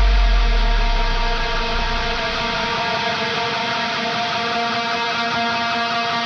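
Heavy hardcore band recording in a drumless held passage: a distorted electric guitar chord left ringing as steady sustained tones, while a low bass note dies away over the first two seconds.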